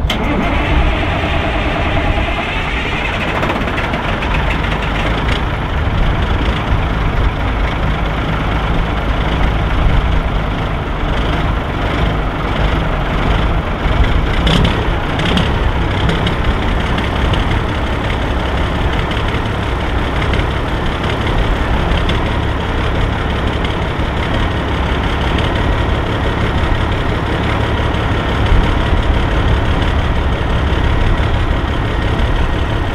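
The diesel engine of a 1984 Peterbilt 362 cabover starts cold, rising in pitch over the first few seconds, then settles into a steady idle to warm up. It catches with little complaint, this not being a very cold morning.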